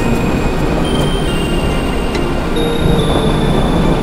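Background music of long held tones that change pitch every second or so, over a steady low rumble.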